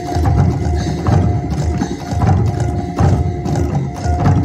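Traditional percussion ensemble playing live: a large drum struck in a steady beat, with cymbal clashes and a gong's ringing note held over it.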